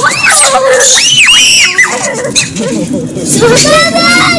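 Shrill, arching screams, several in quick succession in the first two seconds, then another voice crying out near the end.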